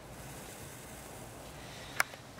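Quiet room tone: a faint steady hiss with no distinct event, ending with a single short click.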